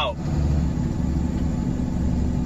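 Vehicle engine running and tyre/road noise heard from inside the cab while driving: a steady low hum.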